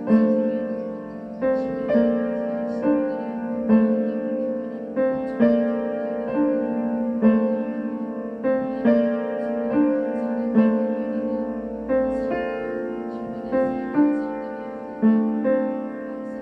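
Background piano music: slow notes and chords struck about once a second, each ringing and fading before the next.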